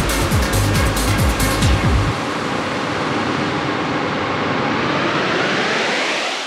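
Electronic dance music from a DJ mix: a steady kick-drum beat with full synths, which cuts out about two seconds in, leaving a sustained wash of noise.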